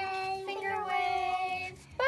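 A girl singing the word 'wave' on one long held note, ending shortly before a new note begins right at the end.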